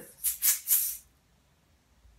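A small handheld rattle shaken in one quick burst of about three pulses lasting under a second, then still. The pulses come from a single downward impulse of the wrist with the hand rebounding, as in a cello vibrato motion.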